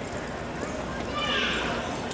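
Background chatter of voices, with one short high-pitched voice about a second in.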